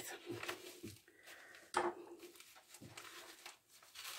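Faint rustling and a few soft knocks as a fabric-covered journal and its paper pages are handled and the cover is opened. The sharpest knock comes a little before halfway through.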